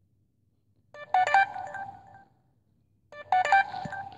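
Electronic alert tone, a quick run of beeps ending in a held note, sounding twice about two seconds apart.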